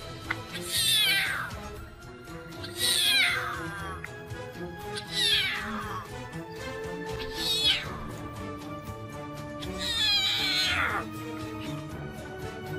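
Lion cub mewing: five high calls about two seconds apart, each falling steeply in pitch, over background music with held tones.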